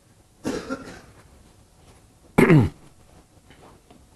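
A man coughing twice: a rough cough about half a second in, then a louder one a couple of seconds later whose voice drops sharply in pitch.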